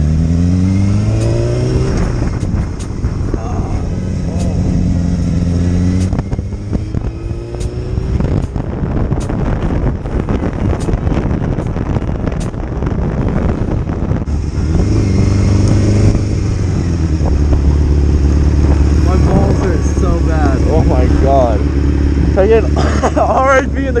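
Motorcycle engine pulling away, its pitch rising through the revs, then running steadily. Wind rushing on the helmet microphone while riding from about six to fourteen seconds. From about seventeen seconds the engine idles with a steady low hum.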